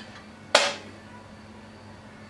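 A single sharp knock about half a second in, dying away within a quarter second, over a faint steady low hum.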